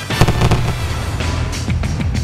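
Fireworks going off, several sharp bangs of bursting shells, over a music track with a steady low bass line.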